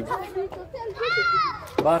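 Children's voices, with one child's high-pitched call about a second in that rises and then falls.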